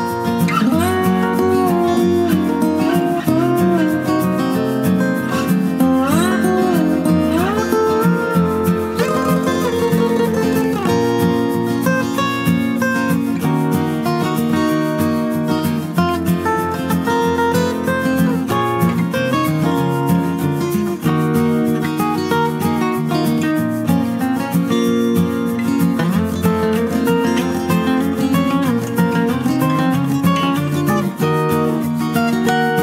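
Background music led by acoustic guitar, with strummed chords and a melody whose notes slide in pitch during the first ten seconds.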